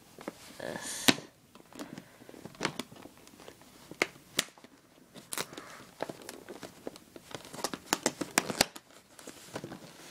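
Plastic blister packaging being pulled open off its cardboard card, crinkling and crackling with irregular sharp clicks.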